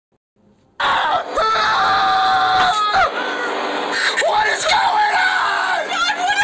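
Screaming: a long, high held scream begins suddenly about a second in, followed by further shorter screams and cries.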